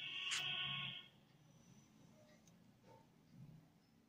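A steady electronic buzzing tone that cuts off suddenly about a second in, followed by faint low handling sounds.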